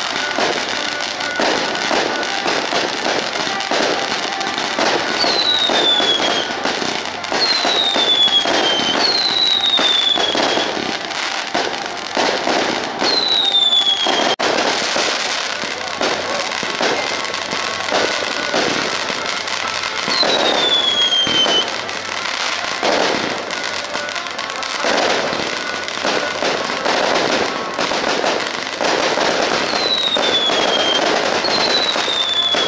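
A dense barrage of firework cakes and firecrackers going off: continuous crackling with many sharp bangs. Falling whistles sound through it about six times.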